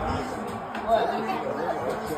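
Indistinct chatter of several people talking in a house, with no clear words.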